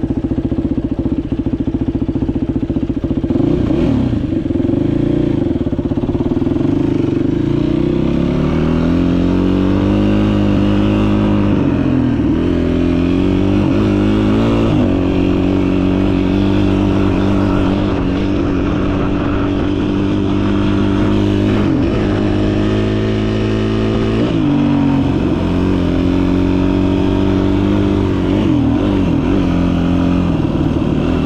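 Yamaha WR250F four-stroke single-cylinder dirt bike engine running close by, its pitch rising and falling several times as the throttle is opened and eased off.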